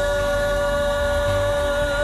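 Live gospel worship song: voices hold one long, steady sung note over the band's sustained accompaniment.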